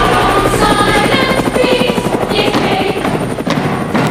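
Helicopter rotor chopping, a rapid steady beat, laid over music as a sound effect.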